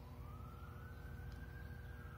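Faint siren wailing, its pitch rising slowly through the two seconds.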